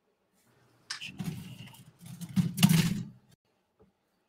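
Plastic model-kit runners (sprues) being picked up and handled on a cutting mat: a sharp click about a second in, then about two seconds of rattling and scraping that stops abruptly.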